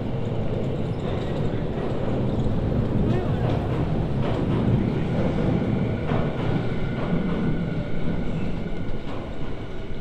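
Train running over elevated railway tracks, heard from beneath the viaduct as a loud, steady rumble. A faint high whine joins it in the second half.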